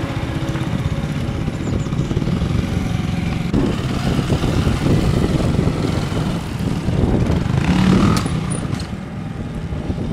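Scorpa SY 250 F four-stroke trials motorcycle engine running at low revs, with repeated throttle blips that swell and fall back, the loudest about eight seconds in.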